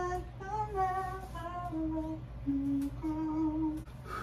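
A woman humming a slow lullaby tune to settle a baby, a string of held notes that mostly step down in pitch, the last note held and cut off near the end.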